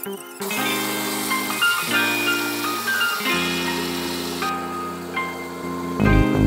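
Background music: held chords that change every second or so, with higher melody notes over them.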